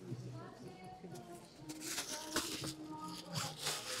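Faint background voices of people talking at a distance, with light handling noises.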